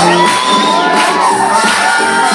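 Crowd cheering and whooping over swing music with a steady beat.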